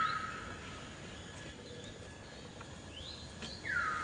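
A high, clear call that drops in pitch and then holds for under a second, heard once at the start and again near the end, with faint chirps between.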